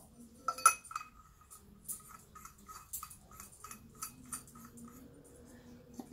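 Small metal alcohol stove being handled: a sharp metal clink about half a second in, then a run of light metallic clicks, a few a second, as its screw-together parts are turned.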